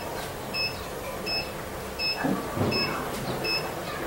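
A short, high electronic beep repeating evenly, about five times in four seconds, over faint room noise.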